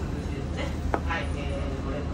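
Canal tour boat's engine running with a steady low hum, under background voices, with one sharp click about a second in.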